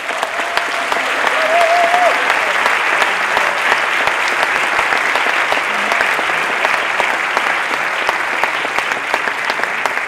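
A large audience in a lecture hall applauding: dense clapping that swells over the first couple of seconds, holds steady, and eases slightly near the end.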